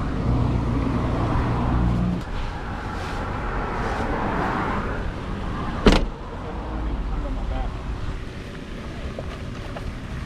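A steady low motor-vehicle hum, strongest in the first two seconds and fainter after. A single sharp knock about six seconds in is the loudest sound, with a few lighter clicks of handling around it.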